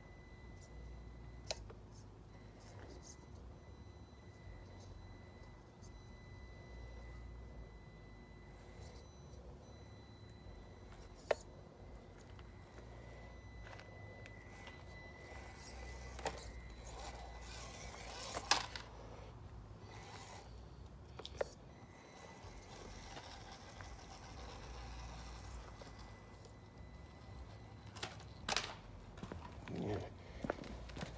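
A small electric RC crawler truck climbing over tree roots: its motor gives a faint steady high whine, with a few sharp clicks and knocks as the truck bumps on the roots, over a low steady rumble.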